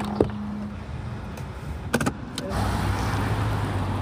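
A car door handle pulled with a sharp click as the door opens, and a knock from the door about two seconds in. Then a car drives by with a steady low engine hum and tyre noise.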